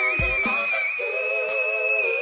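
A female pop singer holds one very high whistle-register note steadily over sustained backing music. There is a low thump just after the start.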